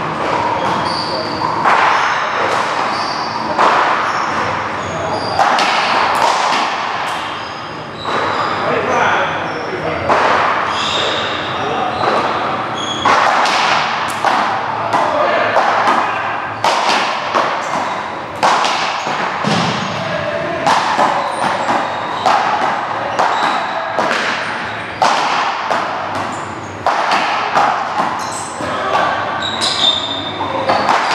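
Paddleball doubles rally: a hard rubber ball smacking off solid paddles, the front wall and the floor in quick succession, roughly once a second, each hit echoing around a large hall.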